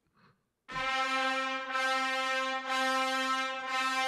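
Orchestral Tools Metropolis Ark 3 sampled trumpet ensemble playing half-note repetitions on a single held note: four repeated notes about a second apart, each with a bright attack.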